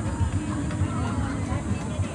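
Indistinct voices of people some way off, over a constant low rumble of wind on the microphone.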